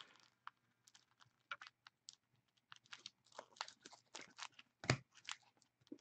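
Faint, irregular clicks and light rustles of a stack of Panini Prizm soccer trading cards being flipped through by hand, with one louder click about five seconds in.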